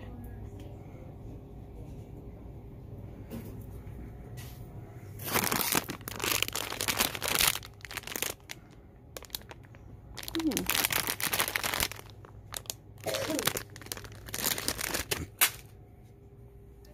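Plastic candy packaging crinkling as it is handled, in about four bouts of a second or two each, starting about five seconds in.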